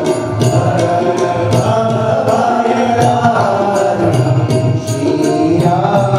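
Devotional chanting sung to music, a voice holding and bending long notes over a light, steady percussion beat of about four strokes a second.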